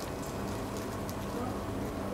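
Steady laboratory background: an even hiss with a faint constant hum underneath, and no distinct handling sounds.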